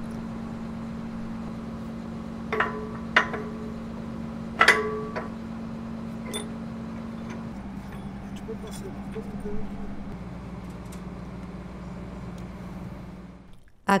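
Sharp metallic clinks as heavy steel crane parts are knocked together while being fitted, three of them in the first five seconds, each with a brief ring, then a few fainter ticks, over a steady low mechanical hum.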